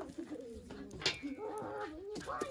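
Pigeons cooing, low wavering notes repeated, with a sharp click about a second in.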